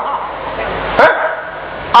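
A short pause in a man's speech through a public-address system, with steady hiss underneath and one brief, loud voiced exclamation about a second in.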